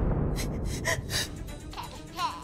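A woman's frightened gasps, a few short sharp breaths in the first half, over low, droning dramatic background music.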